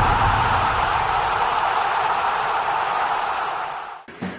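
Intro graphic sound effect: a steady rushing hiss that slowly fades away toward the end.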